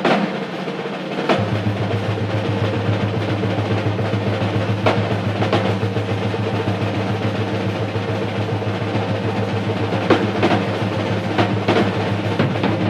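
Live jazz band with the drum kit to the fore: rolls on snare and toms with scattered cymbal and drum accents. A low held note comes in about a second in and sustains beneath the drums.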